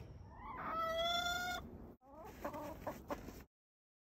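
A chicken's long pitched call lasting about a second, then after a brief break a run of short clucks; the sound cuts off abruptly about three and a half seconds in.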